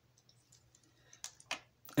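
Plastic Bakugan toy figures being handled: a few faint light clicks, then two sharper plastic clicks past the middle.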